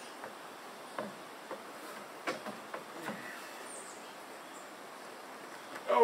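Scattered light knocks and clicks of a wooden truss and boots on a plank deck as the truss is walked and steadied by hand, a few separate clicks about a second apart over faint outdoor background, with a short high chirp midway.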